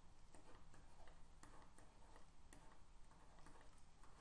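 Faint, irregular light clicks and taps, a few a second, over near silence: a pen stylus tapping on a drawing tablet as tick marks and numbers are written.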